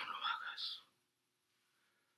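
A man whispering a short hush, about a second long, then falling quiet.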